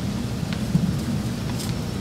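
Steady low rumble of room background noise with a few light clicks and a brief bump about three-quarters of a second in, from a handheld microphone being handled and passed along the table.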